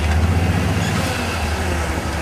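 A rock-crawler buggy's engine running steadily with a deep, even rumble.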